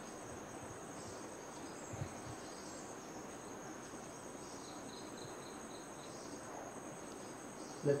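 Insects trilling steadily in a high, continuous tone, with a short run of quick higher chirps around five seconds in and a soft low thump about two seconds in.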